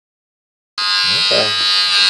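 Electric hair clippers running with a steady buzz, held to a man's head during a haircut. The buzz starts abruptly about three quarters of a second in.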